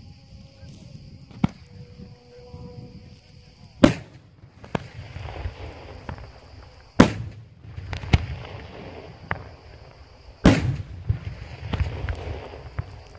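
Daytime aerial fireworks shells bursting overhead: about eight sharp bangs a second or so apart, the three loudest about 4, 7 and 10 seconds in, each followed by a rolling rumble.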